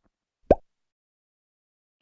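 A single short synthetic plop sound effect with a quick upward sweep in pitch, about half a second in. Otherwise silence.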